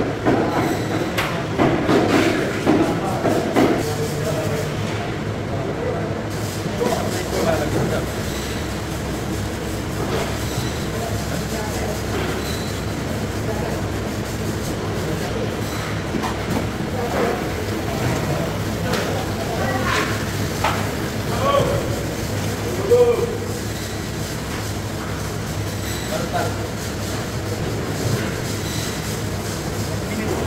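Steady machinery drone of a fish-processing plant, with voices talking in the background during the first few seconds and a few sharp knocks later on.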